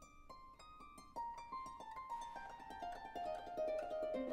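Opera orchestra playing a quiet passage of plucked-string notes. About a second in it grows louder and the notes come thicker, building toward the end.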